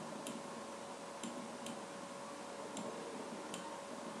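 Faint mouse clicks, about five single clicks spaced roughly a second apart, over quiet steady microphone hiss.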